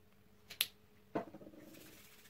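Two quiet, sharp snaps about half a second apart, the second lower with a short rattle after it, then a brief soft rubbing as hands spread Vitress hair shine oil.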